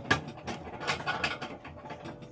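Hands handling food and plates: a quick run of small clicks and rustles as a burger patty is set on a bun and tomato slices are picked up, the sharpest click right at the start.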